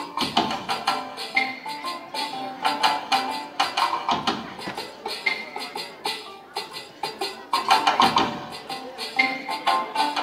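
Recorded dance music played over PA loudspeakers, with a brisk, steady percussive beat of several strikes a second under a melody.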